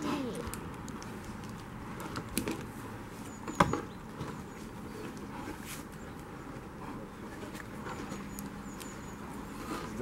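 Steady outdoor background noise with a couple of light knocks and one sharp knock about three and a half seconds in.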